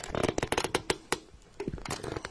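Handling noise from a phone being gripped and repositioned: a rapid, irregular patter of small clicks and rubs from fingers close to its microphone, thinning out near the end.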